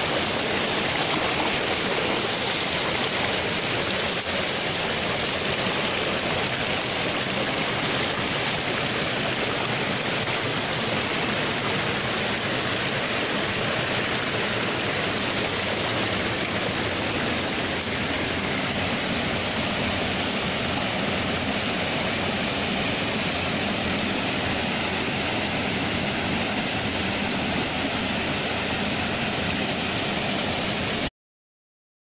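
Small waterfall pouring into a rock pool in a mountain stream: a steady, even rush of falling water.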